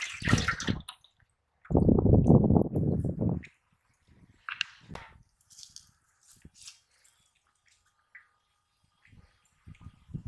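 Water splashing and sloshing in an aluminium basin as a freshly caught catfish thrashes and a hand moves in the water: a short splash at the start, then a louder, lower spell of sloshing about two seconds in. After that only a few faint scattered taps and rustles.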